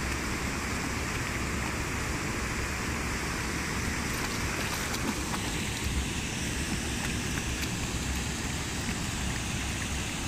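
Shallow river running over stones, a steady rushing with a low rumble beneath it, and a few faint splashes as a dog wades.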